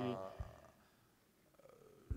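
A man's voice trailing off on one drawn-out, falling syllable, followed by a pause of near silence about a second long, with a faint low bump in the pause.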